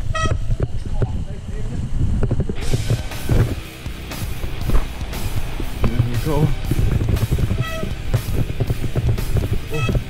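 Mountain bike clattering and thumping over roots and dirt on a fast descent, with a constant low rumble, as heard from a camera mounted on the rider or bike. A few brief pitched tones come through near the start and in the second half.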